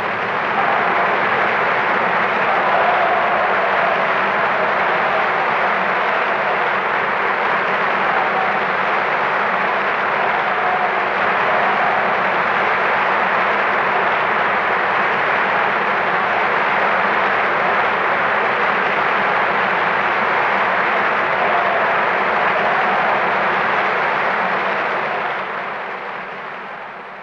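Opera house audience applauding in a long, steady ovation on an old live recording, the applause fading out near the end.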